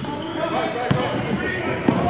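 Basketball bouncing on a hardwood gym floor, two sharp hits about a second apart, amid players' voices echoing in the gym.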